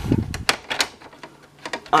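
A few sharp plastic clicks and knocks from handling a Sony CFD-S01 portable boombox, with a dull thump at the start.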